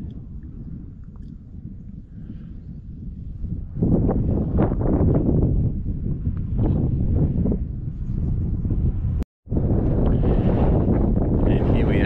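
Wind buffeting the microphone, a low rumbling that grows stronger about four seconds in and carries on in gusts; the sound cuts out for an instant near the end at an edit.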